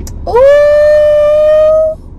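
A woman's voice holding one long, loud note. It scoops up into the note and holds it, a celebratory vocal whoop that cuts off sharply near the end.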